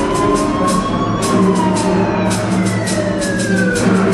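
A wailing siren sound effect climbs to a peak about a second in, then winds slowly down and starts to rise again near the end. Under it runs orchestral music with a steady ticking beat.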